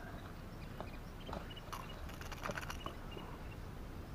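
Faint, scattered clicks and knocks from handling a small caught fish and the lure hooked in it, with a few brief high squeaks in the middle.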